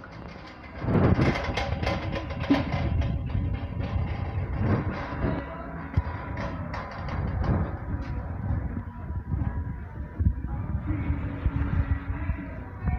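Background music over supermarket noise, with frequent short clatters.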